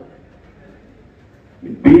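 A pause in a man's speech through a public-address system: faint, even hall background, then his amplified voice starts again near the end.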